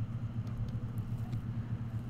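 Steady low background hum with a slight flutter, with a few faint clicks.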